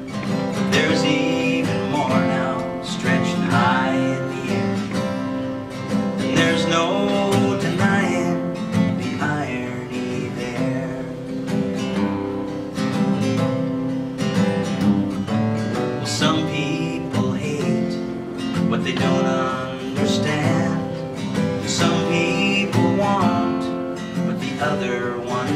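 Steel-string acoustic guitar strummed in a steady folk accompaniment, with a man singing over it.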